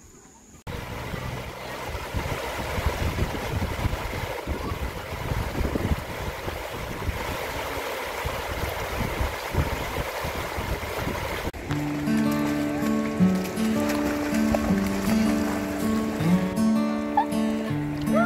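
Steady rush of river water spilling over a low rock weir. About two-thirds of the way through, background music with a steady repeating pattern takes over.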